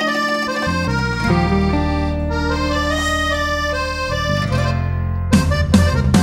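Accordion music: held chords over a bass line that changes note a few times. Near the end, sharp drum strokes come in.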